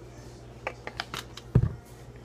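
A spoon clicking and scraping in a Nutella jar as Nutella is scooped out, a few short ticks, then a dull thump about one and a half seconds in, the loudest sound.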